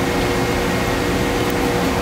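Steady hum and rush of a research ship's machinery and ventilation, with a few constant tones held through it.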